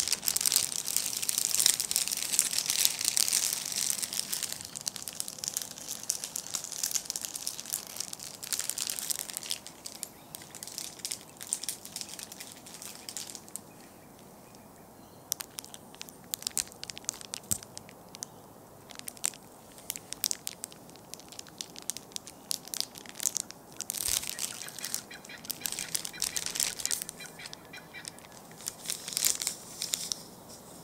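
ASMR scratching and crinkling on an unseen object. A dense run of crackly scratching fills the first few seconds, followed by scattered sharp clicks and taps. Another burst of scratching comes about three-quarters of the way through, and a short one near the end.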